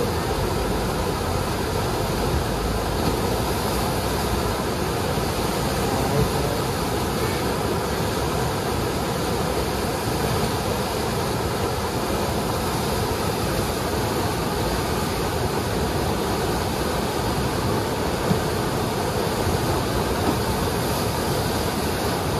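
Steady, loud rush of churning whitewater from the Eisbach's standing river wave.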